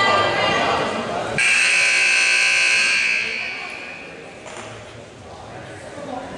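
Gym scoreboard horn sounding once: a loud, steady buzz that cuts in suddenly about a second and a half in, holds for about a second and a half, then dies away in the hall.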